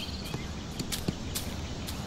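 Outdoor background noise with faint bird chirps near the start and a handful of faint, sharp clicks.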